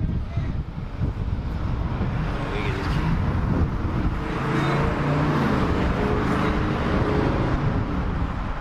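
Road traffic on a busy street: a steady rumble of passing vehicles, with one going by louder and swelling through the second half.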